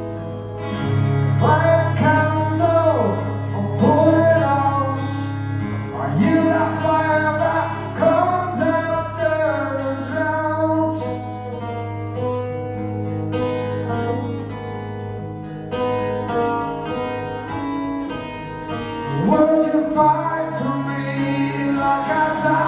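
A man singing live over a strummed acoustic guitar. The vocal comes in phrases through the first half, the guitar carries on alone for several seconds, and the singing returns near the end.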